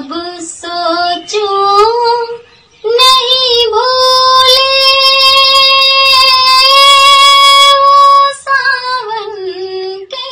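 A woman singing a Hindi film song unaccompanied. A few short phrases lead into one long held high note from about four seconds in until just past eight seconds, then the line falls away.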